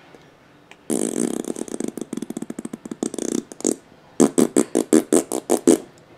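Baby laughing in two bouts: a long, rapid breathy run of about two and a half seconds starting about a second in, then after a short pause about nine separate, louder laugh pulses at roughly six a second.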